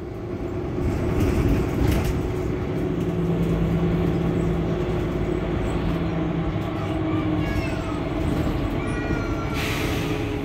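Mercedes-Benz Citaro C2 Hybrid diesel city bus standing at a stop with its engine idling, a steady hum. There are brief air hisses around the second second and just before the end, and a few short high squeaks late on.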